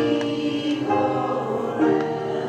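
A small church congregation singing a hymn together, holding long notes that change pitch about once a second.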